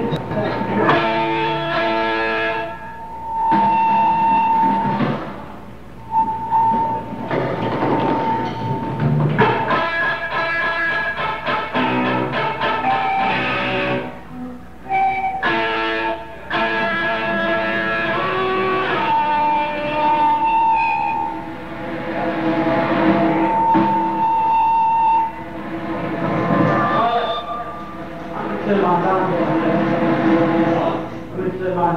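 Rock band playing live at a soundcheck: electric guitars and drums, with long held sung notes over them.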